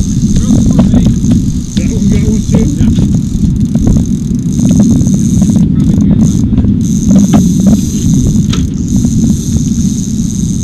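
Steady low rumble with scattered knocks and muffled voices. A thin steady high whine runs through it and drops out briefly about six seconds in.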